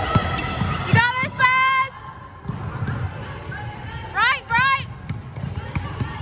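Trainers squeaking on a wooden sports hall floor as players cut and stop: two short, high squeals about a second in and two more about four seconds in. Under them are dull running footsteps.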